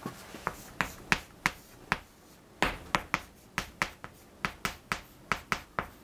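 Chalk tapping on a blackboard as Chinese characters are written stroke by stroke: a run of sharp clicks, about three a second, irregularly spaced.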